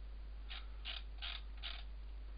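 Computer mouse scroll wheel clicking through four notches, about 0.4 s apart, zooming the view.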